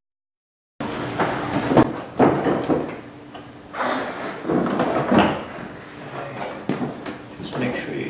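After a short silence, the plastic front bumper cover of a 2003 Honda Civic is worked into place on the car, with uneven scraping and knocking of plastic against plastic.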